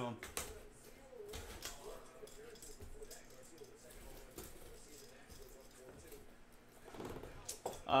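Faint scraping, rustling and light taps of cardboard as a case of trading-card hobby boxes is cut open and the boxes are handled.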